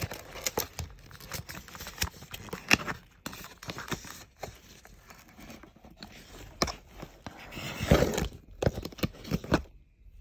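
Cardboard perfume box and its card insert being handled: scraping and rustling with many sharp clicks as the bottle is worked out of the insert, with a louder stretch of rustling near the end.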